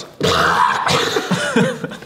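A man coughing and sputtering to clear water he has just inhaled into his nose, one harsh cough about half a second in, followed by laughter.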